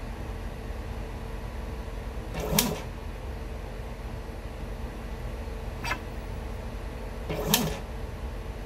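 Steady hum of lab equipment with a faint steady tone, broken by three short clicks or knocks: the loudest about two and a half seconds in, a lighter one near six seconds and another near the end.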